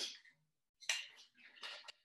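Faint clicks and rattles of a water bottle being handled, a few short sounds in the second half.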